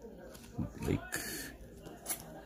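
Baseball trading cards sliding against each other in the hand as one is moved in the stack: a brief papery swish about a second in, next to a softly spoken word.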